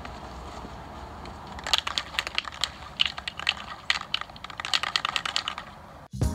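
Aerosol can of matte black spray paint being shaken, its mixing ball rattling in quick irregular runs of clicks that start about two seconds in; the paint is being mixed before spraying.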